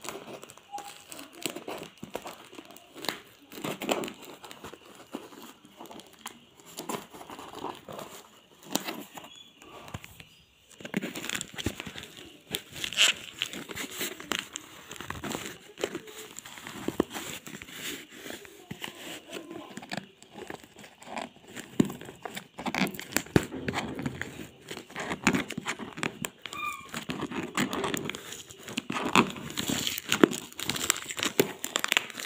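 Clear plastic wrapping crinkling and a cardboard parcel being handled and opened, with irregular crackles and rustles and a short pause about ten seconds in.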